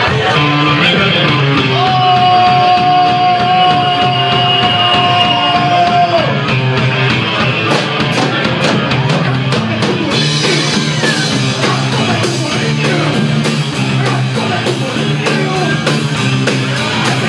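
Live rock band playing with electric guitars, drum kit and vocals. A long held note rings for several seconds near the start, then the drums come in about halfway through with a steady beat.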